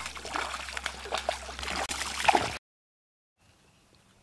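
A hooked bass thrashing and splashing at the water's surface, a run of irregular splashes lasting about two and a half seconds that cuts off suddenly.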